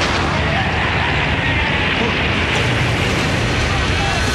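Sea water bursting in through a breach in a ship's steel hull: a loud, steady rush of gushing water that begins as the music cuts off.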